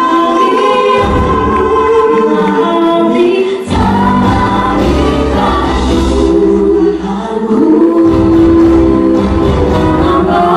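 Female vocalists singing a pop ballad together in harmony over live band accompaniment with keyboard. The backing chords change about a second in, again near four seconds and near eight seconds.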